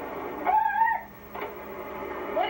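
A short high-pitched vocal squeal from a girl, about half a second long, followed by a brief click, over the steady hiss of a VHS tape played back through a small TV's speaker.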